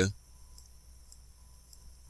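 A few faint computer-mouse clicks over quiet room tone, just after a spoken word ends.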